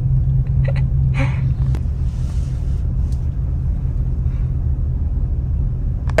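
A car's engine and road rumble heard from inside the cabin as it creeps forward in a queue: a steady low hum.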